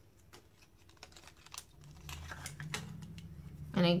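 Scattered faint clicks and taps of long acrylic nails on a plastic lipstick case as it is handled and its cap pulled off.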